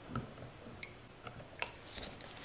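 Faint, scattered light clicks and soft knocks of a silicone spatula stirring liquid oils in a plastic measuring pitcher.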